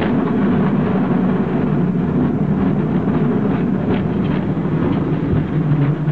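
Cable car climbing a hill on its rails: a steady, loud rumble and rattle of the car running on the track, with a few sharp clanks.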